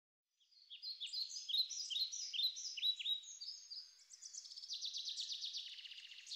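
Songbirds chirping: a string of short, falling chirps, several a second, starting about half a second in, then a fast trill of rapid notes from about four seconds in.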